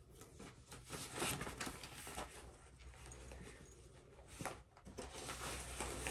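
Quiet rustling and small handling noises as a cross-stitch project and its fabric are moved about, with a few light clicks and knocks over a faint steady low hum.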